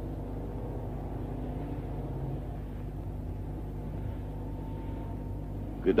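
Steady low mechanical hum and rumble, even throughout, with no sudden events.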